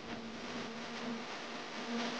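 A small motor buzzing steadily over a hiss. Its hum fades briefly just after a second in and returns near the end.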